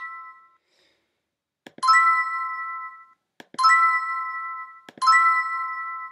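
Online scratchcard game's reveal sound effect: a short click followed by a bright ringing chime, three times about a second and a half apart, each dying away over about a second.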